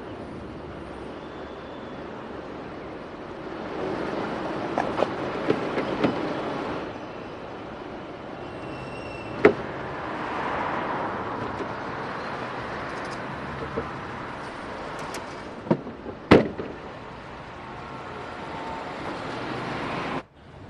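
Car at the roadside: steady vehicle and road noise with a few sharp clunks, the loudest two about sixteen seconds in, and the car driving away near the end.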